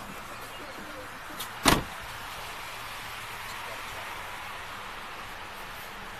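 A car door slammed shut once, a single sharp thud under two seconds in, over a steady background hiss.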